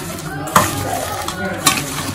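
A hand squeezing and mixing chopped red onions in a stainless steel bowl: a steady wet rustle and crunch of onion pieces, with two sharp clinks against the steel, about half a second in and again near the end.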